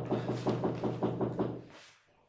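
A rapid, even run of knocks, about six a second, over a low hum. It stops shortly before the end.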